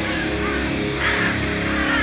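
Raven caws laid over power metal music, with sustained electric guitar chords underneath.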